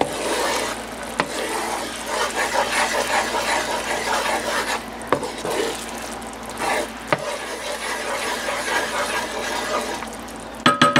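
Soy glaze simmering and bubbling in a nonstick skillet while a wooden slotted spatula stirs and scrapes through it, breaking up a clump of ginger as the sauce cooks down. Three sharp clicks of the spatula against the pan, about a second in, halfway through and a couple of seconds later.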